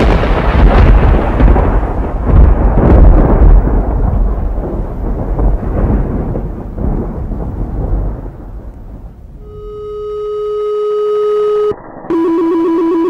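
Thunder: a loud clap followed by a long rumble that fades away over about eight seconds. Near the end a steady held tone swells up and then cuts off suddenly.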